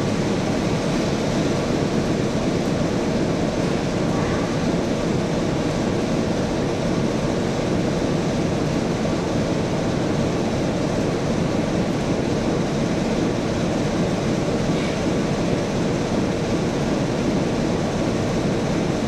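Steady, loud rumble of railway diesel engines inside an engine shed as a green first-generation diesel multiple unit approaches slowly.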